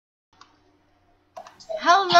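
Near silence broken by a faint click about half a second in, then a sharper click and a man's voice starting near the end.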